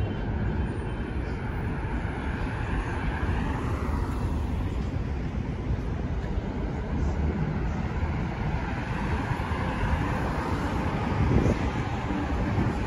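City road traffic: a steady low rumble of cars driving along a multi-lane boulevard, swelling and fading twice as vehicles pass, a few seconds in and again near the end.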